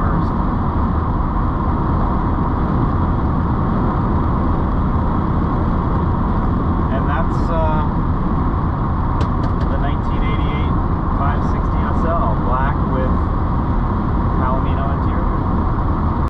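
Steady road, wind and engine noise inside the cabin of a 1988 Mercedes 560SL cruising at highway speed, its 5.6-litre V8 running evenly. A faint voice comes and goes over it.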